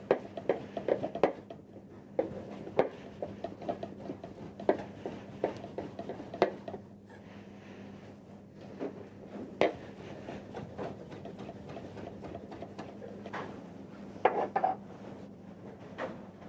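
Knife chopping cooked lobster meat into tartare on a cutting board: a run of quick, irregular knocks of the blade on the board, densest in the first half and sparser later.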